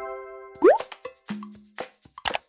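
Final chord of a children's song dying away, then a quick rising 'bloop' cartoon sound effect about half a second in, followed by a few light tapping clicks, one with a short low tone, as animated intro effects.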